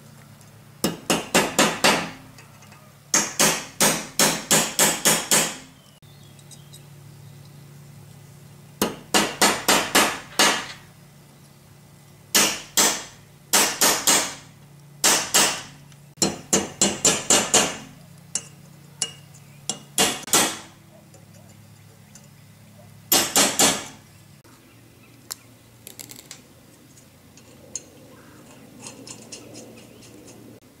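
Hammer tapping a punch to drive wedges into the gap of the steel band clamped around a cast-iron cross-shaft housing, preloading the band. The sharp metallic taps come quickly, several a second, in short runs with pauses between.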